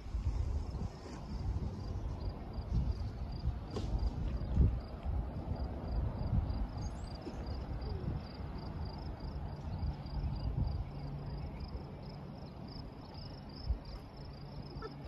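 Outdoor ambience of low, gusty rumbling from wind and rushing water, with a short high chirp repeating about three times a second, like an insect calling. A faint steady low hum comes in about ten seconds in.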